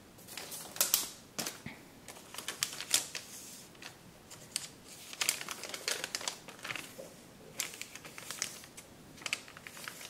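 A sheet of kraft paper being handled and folded on a tabletop: irregular sharp crackles and taps as it is laid down, flattened and creased by hand.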